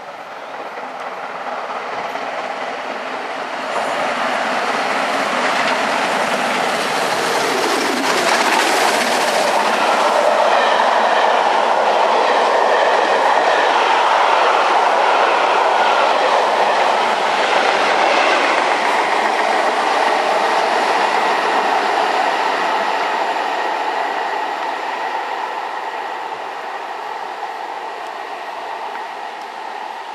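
A locomotive-hauled passenger train passing at speed. The noise builds over about ten seconds, stays loudest while the coaches run by, then slowly fades, with a short falling tone about eight seconds in.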